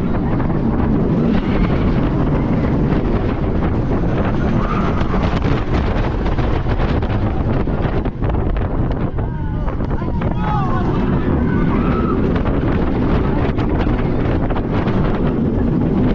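Roller coaster train running at speed along its track, with wind buffeting the onboard microphone throughout. Riders' voices rise over it briefly a few times around the middle.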